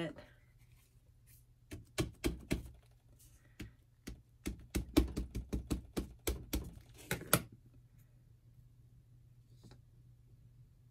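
Stamp pad tapped again and again onto a clear acrylic stamp to ink it: a run of about twenty quick hard plastic taps that begins about two seconds in and stops suddenly near the three-quarter mark.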